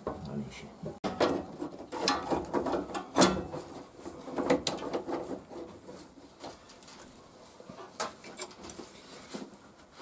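Hand tools clicking and knocking on metal as the rear axle's mounting bolt is worked loose by hand: irregular sharp clicks and clanks, busiest in the first half.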